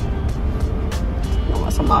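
Low, steady rumble of a car idling, heard inside the cabin, under background music. A woman's voice begins near the end.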